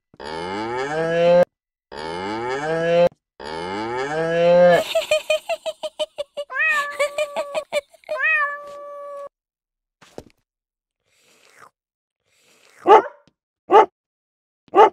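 A toy keyboard's recorded cow moo, played three times in a row, each moo rising in pitch. It is followed by a run of quicker, pulsing sounds and, near the end, a few short loud bursts.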